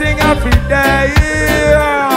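Live reggae band playing: a heavy bass line under drum-kit hits, with a held melodic note that bends downward near the end.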